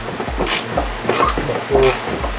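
Background music with a steady bass beat about twice a second, a man's voice briefly near the end, and a few light clicks from a hand tool working a fender-flare bolt.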